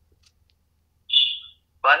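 Near silence for about a second, then a short, loud, high-pitched whistle-like sound, and just before the end a man's voice starts reciting a Tamil verse.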